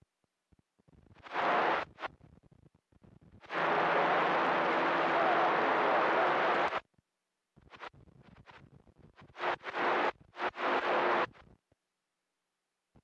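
A CB radio receiver on channel 28 (27.285 MHz) breaking squelch on static. A short burst of hiss comes about a second in, then a steady hiss of about three seconds in the middle with a faint low hum under it, then a few crackles and two more short bursts near the end. Each burst cuts off abruptly as the squelch closes.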